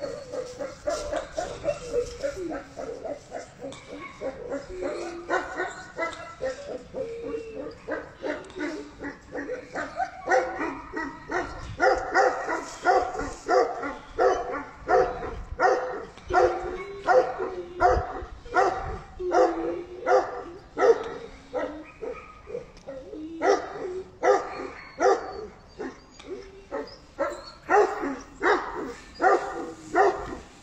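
Tibetan mastiff barking over and over, a deep bark repeated about one and a half times a second. The first ten seconds hold quieter, more drawn-out calls, and the barks turn louder and steadier after that.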